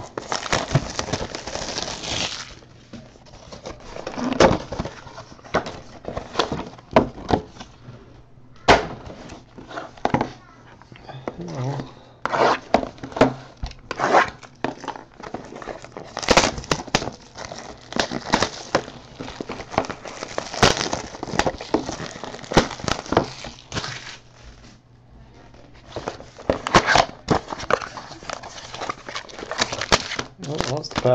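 Hands unwrapping and opening boxes of 2014 Finest baseball cards: plastic wrap crinkling and tearing, cardboard boxes and card packs rustling, with irregular sharp clicks and snaps. The sound comes in busy bursts and eases off briefly near the end.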